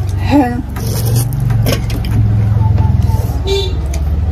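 A strong low rumble like a running motor vehicle, swelling about a second in, with a short hummed voice sound at the start.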